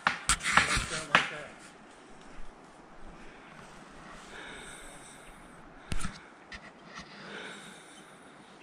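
Wind hissing faintly through the scrub forest, with a cluster of sharp crackles and snaps from dry leaf litter and twigs in the first second or so and another snap about six seconds in.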